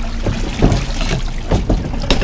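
Water running and dripping off a wire crab pot as it is hauled up out of the sea, with several knocks and clanks of the pot's wire frame.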